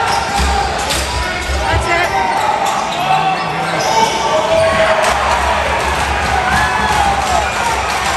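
Box lacrosse play in an indoor arena: repeated sharp clacks and knocks of sticks and the hard rubber ball hitting the floor and boards, over voices of players and spectators calling out.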